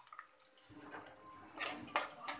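A steel slotted spatula scraping and clinking against an aluminium cooking pot while stirring chopped onions and vegetables. There are a few light scrapes, then a louder run of scrapes near the end.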